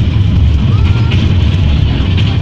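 Small tourist train running along its track, heard from on board as a loud, steady low rumble.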